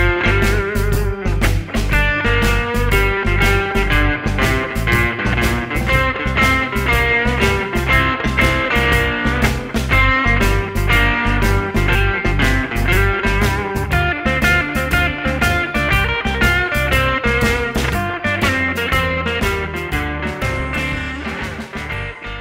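Telecaster-style electric guitar playing a blues lead improvisation in G over a backing track with drums and bass. The phrases land on the strong chord tones of each chord of the blues.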